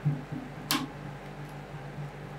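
Metal spatulas chopping into semi-frozen ice cream base on a stainless-steel cold plate: a thump at the start, a few soft knocks, then one sharp click of a blade edge striking the steel about two-thirds of a second in. A steady low hum continues underneath.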